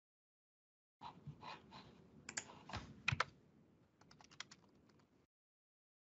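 Typing on a computer keyboard: a quick run of key presses that starts about a second in, is loudest in the middle, and stops after about five seconds.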